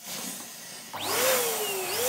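Air rushing through the neck of a green latex balloon: a hiss, then about halfway in a squealing whine that rises and falls in pitch.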